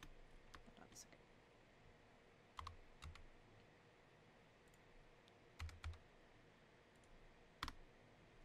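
Computer keyboard keys and mouse buttons clicking now and then, about ten short clicks, a few in quick pairs, with quiet room tone between them.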